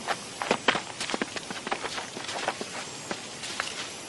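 Soft cartoon footstep effects on soil, heard as light irregular ticks over a faint outdoor background.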